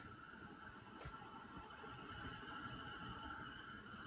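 Faint, steady high-pitched electrical whine from household appliances as the power comes back on after an outage, with a single sharp click about a second in.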